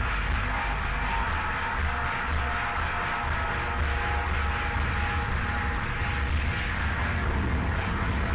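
Background music with a heavy bass.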